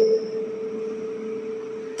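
A steady mid-pitched tone from a public-address system holding on through a pause in speech, typical of microphone feedback ringing. It stops just before the voice returns, over faint hiss.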